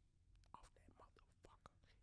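Near silence: room tone with a few faint, brief voice-like sounds.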